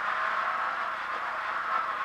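Renault Clio rally car at speed, its engine and road noise heard from inside the cabin, running steadily.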